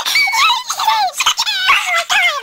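A person imitating horse whinnies in a high, wavering voice: a run of quick squealing cries that slide up and down in pitch, the longest ones quavering.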